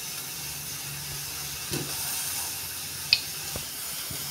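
Cooking oil heating in a hot kadhai, giving a steady faint hiss. There is one brief, sharp high-pitched pop about three seconds in.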